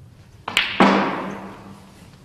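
A sharp knock followed a moment later by a louder, heavier thud that rings away over about a second.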